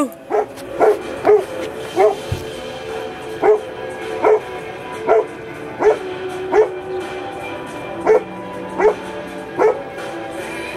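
About a dozen short, high, quickly rising yelps at irregular intervals of roughly a second, over a steady, droning music bed.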